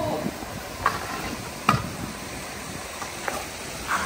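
Kick scooter wheels rolling over concrete paving with a steady hiss, and sharp clicks as the wheels cross the joints between the slabs, three times.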